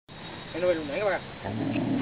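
Two drawn-out calls from a voice, then a low rumble of enduro motorcycle engines that comes in about a second and a half in.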